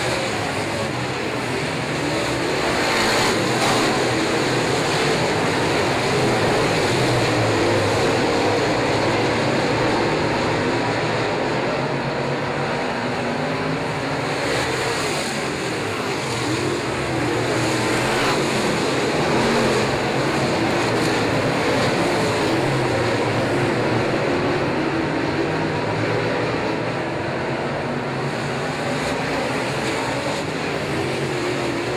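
A pack of dirt late model race cars' V8 engines running hard around the oval, a loud continuous howl that swells and eases as the cars sweep past.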